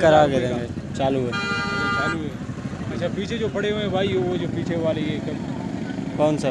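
Men talking, with a vehicle horn sounding once a little over a second in, one steady note lasting about a second.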